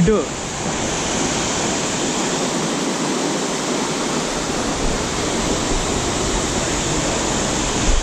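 A waterfall's falling water making a steady, even rush with no change in level.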